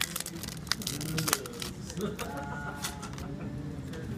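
Sharp clicks and crinkling handling noises, busiest in the first second and a half, then a brief laugh near the end.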